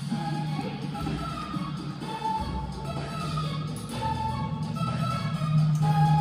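Backing track of a children's pop song playing: held melody notes over a steady bass line.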